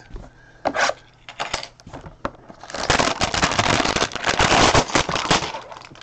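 Plastic wrapping being crinkled: a few scattered crackles, then a dense run of crackling lasting about three seconds.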